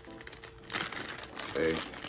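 Wrapping crinkling and rustling in the hands as small perfume sample vials are unwrapped, with a short spoken "okay" near the end.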